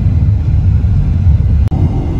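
Loud, steady low rumble of wind and road noise on the microphone of a moving vehicle, breaking off for an instant near the end.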